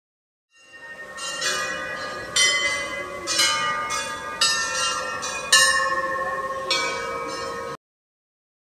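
Hanging brass temple bells rung by hand, about six strikes roughly a second apart, each ringing on under the next. The sound fades in at the start and cuts off suddenly near the end.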